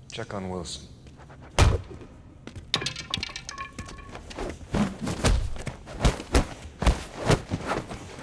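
A heavy thud about one and a half seconds in, then a quick run of punches and body blows in a fistfight through the second half.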